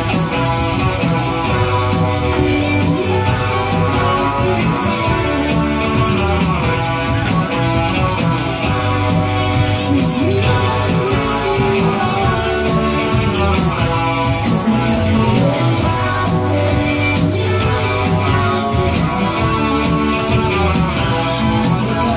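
Live band music with guitar, playing steadily with a regular beat and no vocals.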